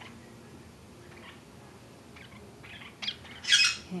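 Lineolated parakeets giving a few faint chirps, then one loud squawk near the end, about half a second long.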